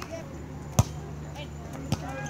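A volleyball struck hard once, a single sharp smack a little under a second in, likely a serve starting the rally, with a lighter ball contact near the end.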